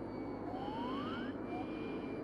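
A Harrier's cockpit landing-gear warning tone, taking turns between two high pitches about every half second, over the steady noise of the jet engine. A single rising tone sweeps up about half a second in.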